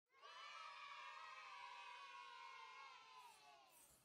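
Faint group of children cheering together, held for about three seconds and then fading away.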